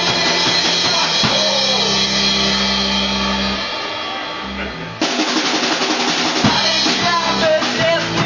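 Rock band playing live on acoustic guitars and drum kit. A chord rings and dies down through the middle, then the whole band comes sharply back in about five seconds in.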